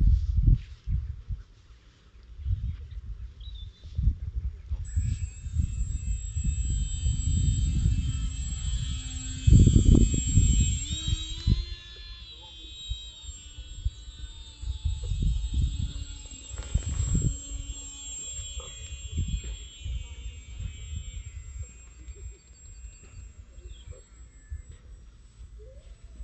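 High thin whine of a small electric model-plane motor with a three-bladed propeller, starting about five seconds in, shifting in pitch around the middle and cutting off a few seconds before the end. Wind buffets the microphone throughout in uneven low gusts, loudest about ten seconds in.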